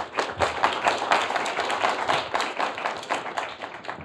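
Audience applause: many people clapping in a dense steady patter that tapers off near the end.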